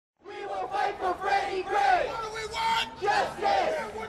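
A crowd of protesters shouting, many voices at once.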